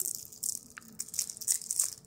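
Two crinkly candy wrappers being twisted and torn open by hand: an irregular crackling rustle.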